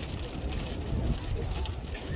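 Low, uneven rumble of wind on the microphone, with a faint murmur of spectators' voices.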